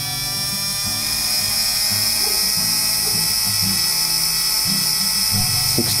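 Small high-speed brushed DC drill motor running unloaded off a bench power supply, with a steady high whine. It grows slightly louder as the supply voltage is turned up and the motor speeds up.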